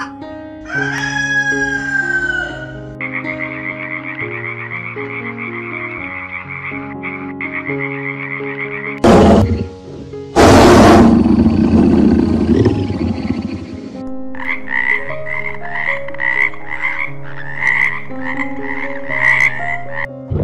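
Background music with steady plucked notes under a run of animal calls: a rooster's call just after the start, then long stretches of a rapidly pulsing high call, broken by two loud, harsh calls about nine and eleven seconds in.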